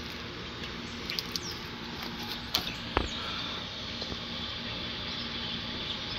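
Steady outdoor background hiss with a faint low hum, broken by a few faint clicks or taps, the clearest about two and a half and three seconds in.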